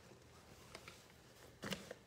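Small objects clicking and clattering as a cluttered drawer is rummaged through by hand: a few faint ticks a little before the middle, then a louder short clatter near the end.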